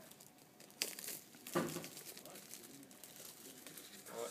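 Clear plastic bag crinkling as a boxed iPad is pulled out of it, with a few sharp crackles between about one and two seconds in, then softer rustling.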